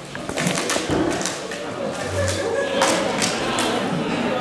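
Plastic water bottle crinkling and crackling as it is twisted tight to build up pressure, with many irregular sharp crackles and no pop.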